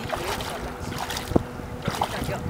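Hooked sturgeon thrashing at the water's surface, splashing, with wind noise on the microphone and a couple of short splashy strokes in the second half.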